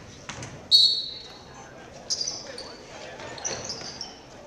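Sneakers squeaking on a hardwood gym floor as players break from the free-throw lane into play. One loud, high squeak comes about a second in, with shorter squeaks later, amid ball bounces and voices.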